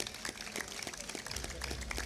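Scattered applause from an audience, a thin run of separate hand claps rather than a full ovation.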